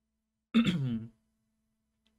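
A man clearing his throat once, a short voiced cough about half a second in.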